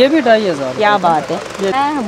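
Speech: a woman talking continuously.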